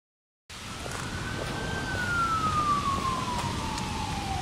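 A siren wailing: after about half a second of silence, a single tone holds steady, then glides slowly down in pitch over outdoor traffic noise.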